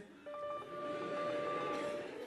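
Telephone ringing sound effect played over the stage sound system: one steady electronic ring tone that starts about a quarter second in and holds at one pitch.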